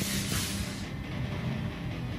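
A steady low hum with an even hiss over it, like a machine running in the background.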